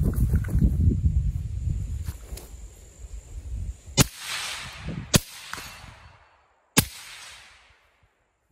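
A low rumbling noise for the first few seconds, then three gunshots from an 11.5-inch AR-style pistol, about four, five and just under seven seconds in, each trailing off in a short echo.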